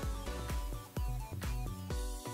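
Background music with a steady beat, about two beats a second.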